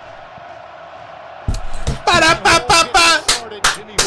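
Stadium crowd noise from the game broadcast as a steady roar. From about halfway through, a man's voice comes in with loud, excited shouts.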